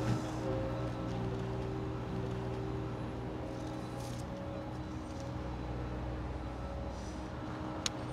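ASV Posi-Track compact track loader's engine idling steadily.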